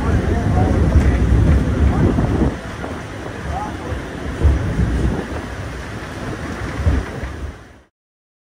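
Strong wind buffeting the microphone: a heavy, gusty rumble that eases a little after about two and a half seconds, then stops abruptly near the end.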